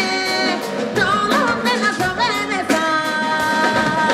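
A West African women's vocal group singing live over a band with drums, their voices sliding and ornamenting, then holding one long note near the end.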